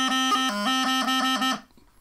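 Bagpipe practice chanter playing a short run of the exercise: a held note broken again and again by quick tapping grace notes, stopping abruptly about a second and a half in.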